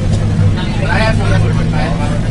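School bus running, heard from inside the cabin: a steady low drone, with children's voices over it.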